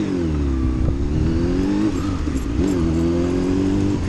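Honda Hornet motorcycle's inline-four engine under way: its note drops, then climbs as the bike pulls away, dips briefly a little before the three-second mark and climbs again before settling steady.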